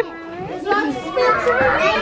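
Many children's voices talking and calling out over each other.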